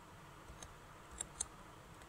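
A few faint, short clicks of computer keys, about four in two seconds, the two loudest close together about a second and a half in, over quiet room tone.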